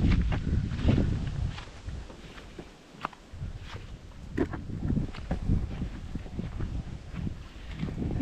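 Footsteps up a grassy bank, with wind rumbling on the microphone in the first second or two and a few sharp clicks and knocks scattered through.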